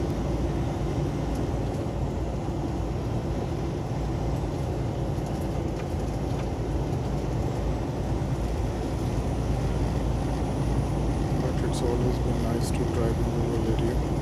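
Steady engine drone and road noise heard inside a truck's cab while driving on the highway, with a couple of sharp clicks near the end.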